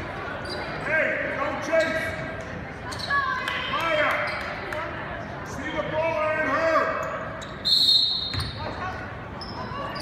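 A basketball game in a gymnasium: a ball bouncing on the hardwood court among short knocks and squeaks, under a steady run of raised crowd voices. About eight seconds in comes a brief loud high-pitched squeal.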